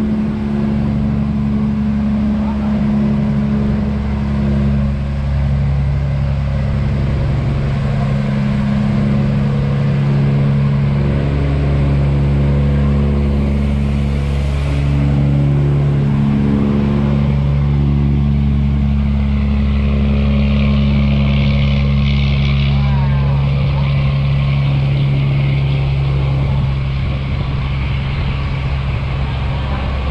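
Diesel engine of a sand-laden steel cargo boat running steadily under heavy load, a deep drone with several engine tones held throughout, the boat pushing against strong current through a sluice gate.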